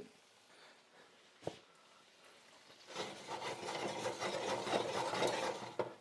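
A single sharp click about one and a half seconds in, then a steady rubbing, scraping noise from about halfway, from a sauté pan being handled on a gas hob while white wine reduces in it.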